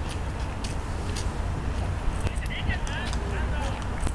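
Outdoor crowd ambience: indistinct voices of people talking in the background over a steady low rumble, with a few brief high-pitched sounds around the middle.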